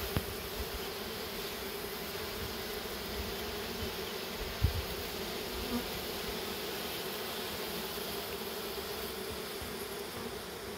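Steady buzzing hum of a large mass of honeybees, the rest of a shaken-down swarm crowding on a tray and walking into the hive entrance after their queen. A short low thump about halfway through.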